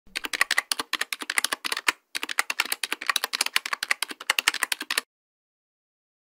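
Rapid typing on keys, about nine clicks a second, with a brief break about two seconds in; it stops abruptly about a second before the end.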